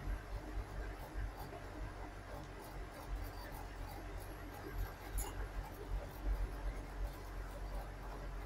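Low, uneven rumble of a truck's engine and road noise heard inside the cab as it pulls slowly up a steep climb, with small scattered rattles and ticks.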